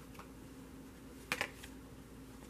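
A few light clicks of tarot cards being handled on the deck, the sharpest a little past a second in.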